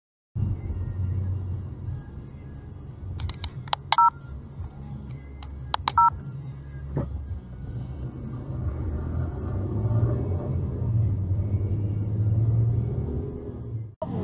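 Low, steady road and engine rumble inside a moving car's cabin. Two short two-tone electronic beeps sound about two seconds apart, near the middle.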